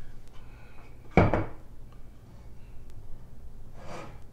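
A single hard knock about a second in, from a glass gallon fermenting jug being handled and set on the countertop, with a few faint clicks around it.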